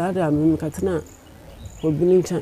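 A person's voice speaking, with faint steady cricket chirping heard in a pause about a second in.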